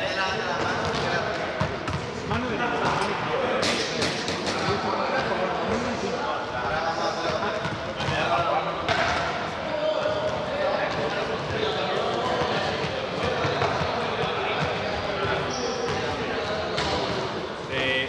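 Small juggling balls bouncing sharply off a sports-hall floor and being caught, with a cluster of bounces about four seconds in and another a few seconds later, ringing in the large hall. Indistinct voices carry on underneath.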